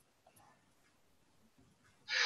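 Near silence: faint background hiss of a video-call audio feed.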